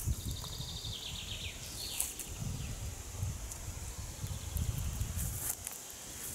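Outdoor nature ambience: a songbird gives a quick run of short high chirps about half a second in and a falling trill around two seconds. Underneath is a steady high insect hum and an uneven low rumble.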